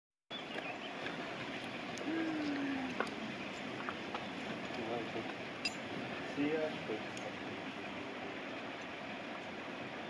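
Steady rushing outdoor background noise with a few brief, low voice fragments. Several light clicks and clinks come from climbing gear being handled: ropes, carabiners and harnesses.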